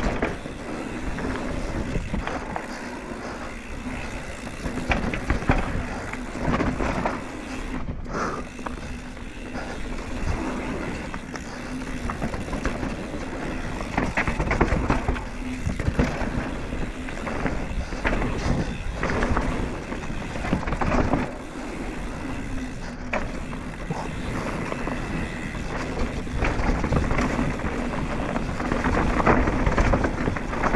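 Banshee Scream downhill mountain bike ridden fast down a dry dirt trail: a steady noise of knobby tyres rolling over dirt, with frequent short knocks and rattles as the bike hits bumps and roots.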